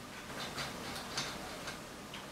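Light metallic clicks, about five of them, the loudest a little past one second in, as a Hayabusa clutch master cylinder's piston is pressed down into its bore against the spring.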